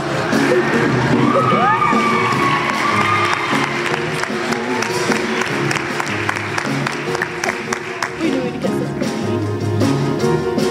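Background music with an audience cheering and clapping, with a few whoops in the middle.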